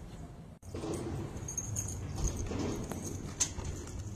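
Quiet outdoor ambience with a low steady rumble and a few short, high bird chirps about one and a half to two seconds in.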